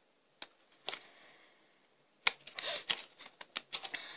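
Tarot cards being handled and shuffled in the hands: scattered card flicks and snaps, a sharper one a little after two seconds in, then a quick run of clicks near the end.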